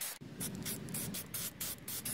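Aerosol can of black spray paint sprayed in a rapid series of short hissing bursts, about four or five a second.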